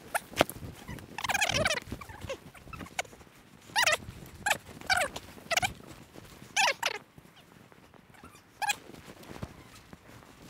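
A person's short, strained vocal sounds, whines and grunts of effort, about seven in all, while struggling through deep powder snow, with a few sharp clicks and snaps early on.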